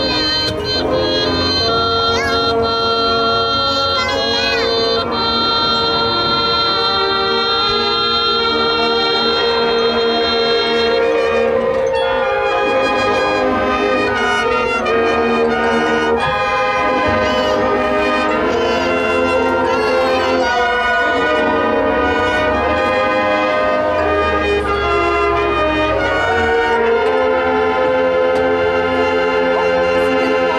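High school marching band playing, the brass carrying sustained chords and melody lines that change every few seconds.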